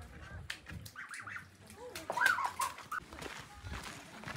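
Young white domestic waterfowl calling, a few short, high calls.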